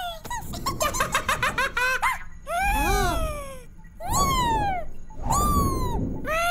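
High-pitched squeaky cartoon character vocalizations: a quick run of short chirps, then three longer calls that each fall in pitch.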